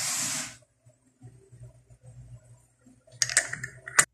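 Metal screw caps being put on and turned onto glass bottles on a wooden table: a short rush of noise at the start, faint knocks, then a cluster of sharp clicks near the end, the last one right at the close.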